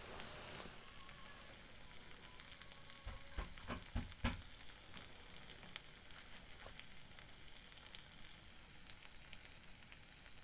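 Chicken wings in a honey-ketchup glaze sizzling faintly and steadily in a frying pan on the stove. A few soft knocks come about three to four seconds in.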